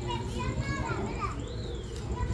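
Children's voices in the background, high calls that rise and fall in pitch, over a low murmur of the gathered crowd.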